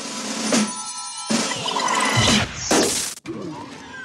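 Cartoon sound effects: a run of loud crashing and smashing noises with sliding pitch sweeps, dying down to a quieter stretch near the end.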